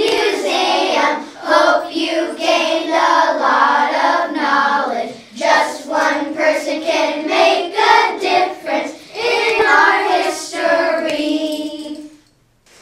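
A class of young children singing together in unison, ending on a held note that cuts off near the end.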